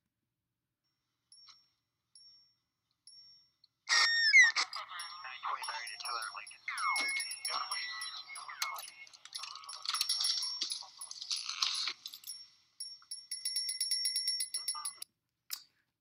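Film soundtrack of a suspense scene: nearly silent for about four seconds, then suddenly a run of quick, high sound effects with gliding chirps, thin-sounding voices and rustling, ending in a fast, even ticking.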